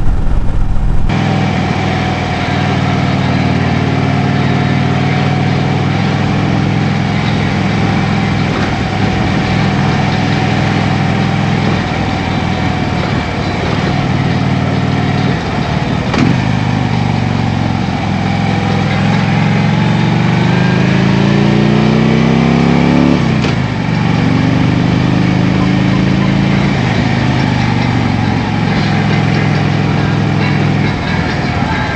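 Harley-Davidson touring motorcycle's V-twin engine running steadily at road speed. About twenty seconds in the engine revs up for a few seconds and drops sharply at a gear change, then settles back to a steady run.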